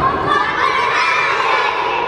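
A group of young girls shouting and cheering together, a loud, continuous clamour of many high voices.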